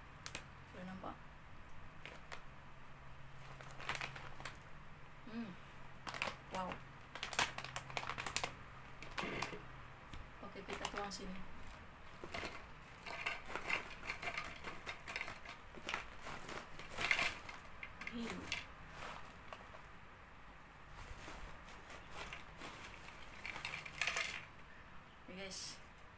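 Foil chip bag crinkling as it is tipped and shaken, with ridged potato chips clattering onto a ceramic plate in irregular bursts of sharp clicks.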